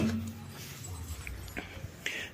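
A sharp click of the hood release lever being pulled right at the start. After it there is only a low, steady background hum.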